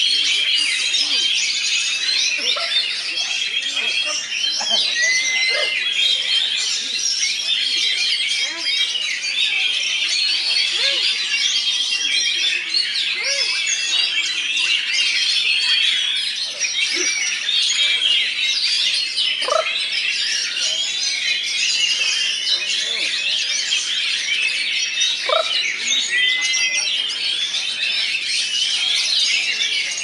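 Many caged oriental magpie-robins (kacer) singing at once in competition: a dense, unbroken tangle of overlapping whistles and chattering phrases, with some short held whistled notes.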